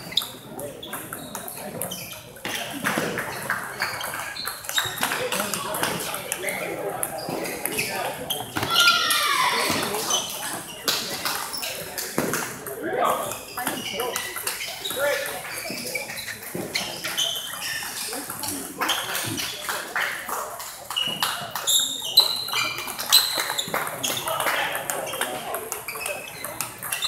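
Table tennis balls clicking off rubber paddles and the table in rallies, with short pauses between points. A hall full of voices chatters throughout.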